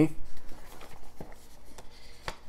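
A plastic Blu-ray case being slid and lifted out of a cardboard box tray: light rubbing and scraping with a few soft clicks.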